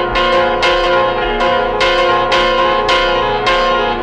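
Instrumental piano music: the piano strikes chords about twice a second in an even rhythm, and the notes ring on between the strikes.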